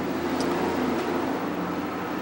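Steady background hum and hiss with no speech; its source is not shown.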